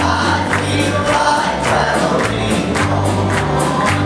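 Church congregation singing a gospel song over instrumental accompaniment, with a steady beat of about two strokes a second.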